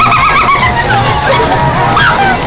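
Loud music playing over a Waltzer fairground ride, with the ride's steady low rumble beneath. A wavering high-pitched voice comes through in the first half-second or so.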